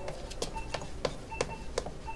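Brisk footsteps clicking on a hard floor, about three steps a second, with faint short electronic beeps in the background.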